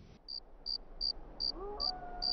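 A cricket chirping: short, evenly spaced high chirps, about two or three a second. A faint held tone comes in past the middle.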